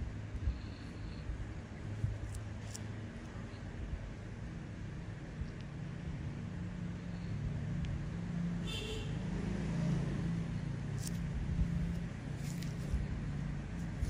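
Low background rumble of what sounds like passing road traffic, with an engine drone that grows louder toward the middle and then eases, and a few faint clicks.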